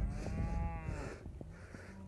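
A cow moos once, a single call of about a second that rises and falls in pitch. Low wind rumble runs underneath.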